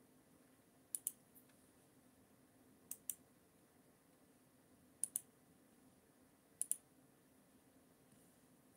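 Faint clicking at a computer: four quick double clicks, about two seconds apart, over quiet room tone.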